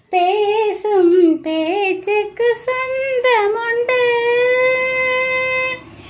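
A woman singing a Tamil song melody in a high voice without clear words, the pitch wavering and bending through short phrases, then one long steady held note from about four seconds in that stops shortly before the end.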